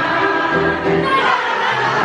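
Live music with a roomful of people singing along together.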